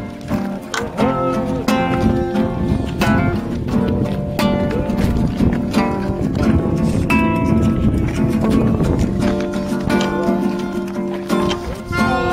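Live acoustic band music: a strummed acoustic guitar with held notes from a small keyboard instrument, played steadily throughout.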